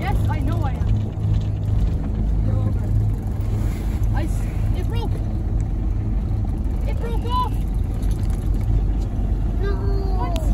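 A boat's engine running with a steady low hum, with faint voices over it.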